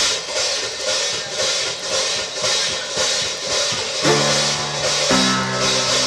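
Jazz drum kit starting a tune, cymbals and drums keeping a steady beat about two strokes a second; about four seconds in, long held notes join, each lasting about a second before moving to the next pitch.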